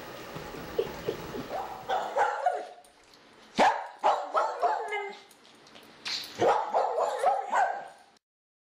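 Dog barking and yipping in short, sharp bursts, starting about two seconds in and coming in two quick bouts.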